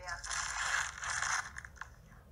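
Rustling and scraping noise from a phone being handled while it records, lasting about a second and a half.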